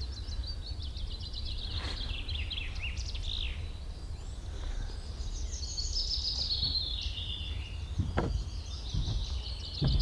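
Small songbirds singing in quick chattering and trilled phrases, over a steady low rumble of wind on the microphone. Two or three short knocks come near the end.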